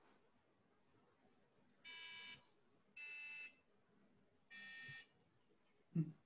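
Finch Robot 2.0's buzzer playing three separate beeped notes, each about half a second long, stepping down slightly in pitch, heard faintly over a video call; a short thump at the very end.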